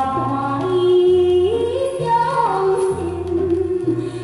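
Taiwanese-language ballad: a woman singing long held notes over band accompaniment, with a bass line that steps to a new note about once a second.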